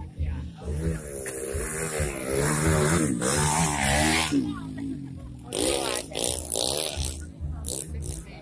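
Dirt bike engine revving up and down as it comes round the track, pitch rising and falling repeatedly and loudest a few seconds in, mixed with spectators' voices.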